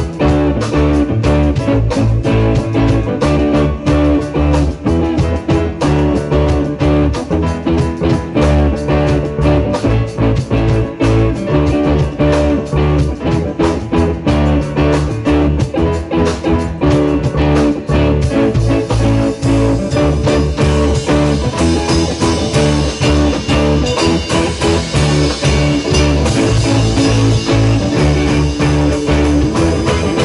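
Live rock band playing an instrumental passage: electric guitar over bass guitar, keyboard and drum kit, loud and steady, with the high end growing brighter and fuller about two-thirds of the way through.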